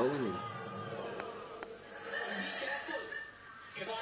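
Sitcom audio playing from a television in the room: a voice right at the start, then quieter indistinct sound from the set over a faint steady hum.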